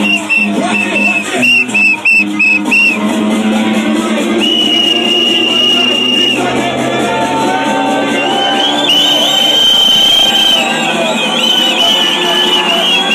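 Bass-heavy club music played loud over a sound system, with a steady beat. A high whistle-like note stutters in short repeats at first, is held for about two seconds in the middle, and returns wavering near the end.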